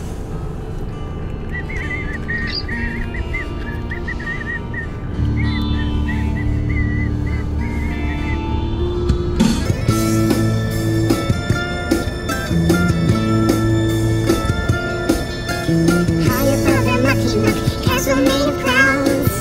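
Rock music playing on the car stereo. It opens quietly with high warbling notes over held bass notes, then drums and the full band come in about nine seconds in.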